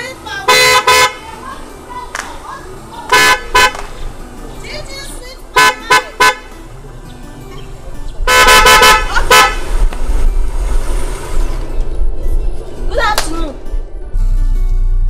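Car horn of a Mercedes-Benz M-Class SUV honking in a series of toots: one short blast, a pair, three quick toots, then a longer blast followed by one more about two-thirds of the way in.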